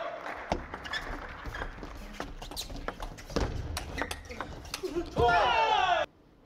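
Table tennis ball clicking off the rackets and table at an irregular pace during a doubles rally, over a low background hum of the hall. A loud voice breaks in during the last second.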